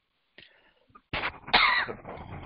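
A person coughing: a short burst about a second in, then a longer, louder one.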